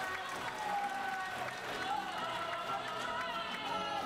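Several voices of a stage cast singing and calling out together, with music underneath.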